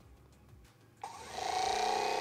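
Theragun Pro percussive massage gun switching on about a second in, its motor spinning up within half a second to its default top speed of 2400 percussions per minute and then running steadily.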